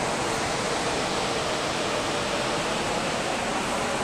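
Steady, even rushing noise of the Ganga river flowing, with no distinct events.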